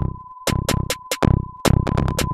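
Electronic drum-machine music live-coded in TidalCycles: a fast pattern of sharp clicky hits over deep kicks, with a thin steady high tone running underneath. The beat thins out briefly near the start before the kicks come back in.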